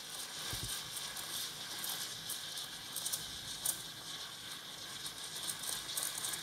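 Steam wand of a Bellman CX-25P stovetop espresso maker hissing and crackling steadily in a stainless pitcher of milk, frothing it into thick foam.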